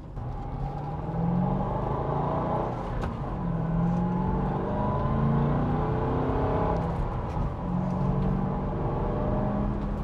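The stock 4.6-litre V8 of a 2006 Ford Mustang GT, heard from inside the cabin while driving. Its engine note climbs in pitch and levels off a few times as the car pulls away and cruises.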